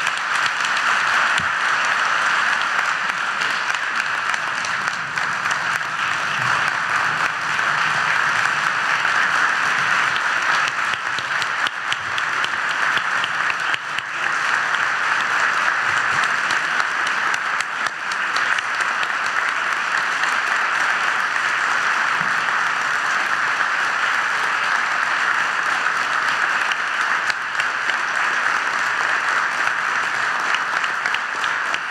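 Sustained applause from a large audience: a loud, steady wash of many hands clapping that starts right after a speech ends.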